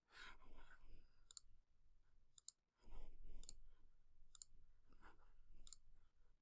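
A few faint, sharp computer mouse clicks, spaced irregularly, over near-silent room tone, with two soft low rustles in between.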